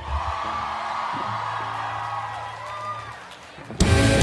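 Audience cheering and whooping while held electric guitar and bass notes ring from the amps. Just before the end a rock band crashes in loudly with drums and distorted guitars, starting the first song.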